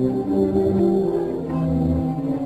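Orchestral dance music from an old film soundtrack, with sustained notes in the low and middle register moving from pitch to pitch, accompanying couples dancing at a ball.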